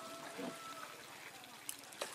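Faint pond-side quiet with a single small splash near the end, as a live shrimp lands on the surface of the pond water.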